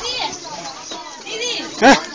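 Several people's voices, children among them, chattering and calling out, with one short, loud call near the end.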